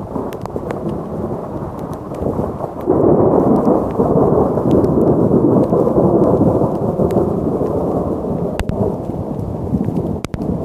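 A long roll of thunder that builds, gets much louder about three seconds in, rumbles on and eases slightly near the end. Rain clicks against the microphone throughout.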